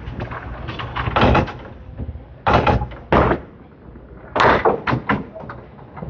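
Candlepin bowling ball rolling down a synthetic lane and knocking into the pins, followed by a series of sharp clattering knocks of pins and wood. The sharpest knock comes about four and a half seconds in.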